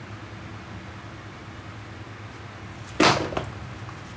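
A rubber-soled sneaker set down onto a hard tiled floor, making one sharp slap about three seconds in that dies away within half a second, over a steady low room hum.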